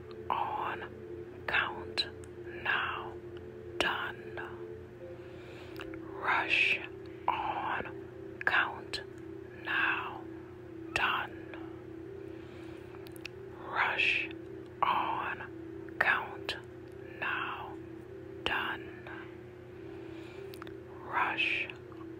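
A voice whispering a short phrase over and over, the switchwords "rush on count now done", over a steady low droning tone that shifts pitch about five seconds in.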